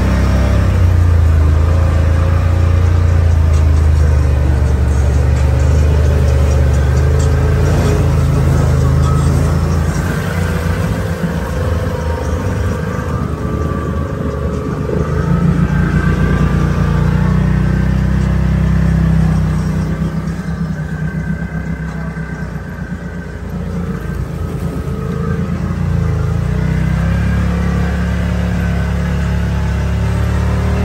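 Side-by-side UTV engine running as it drives over dirt and mud trails, with music playing over it. The engine's low drone eases in the middle and picks up again near the end.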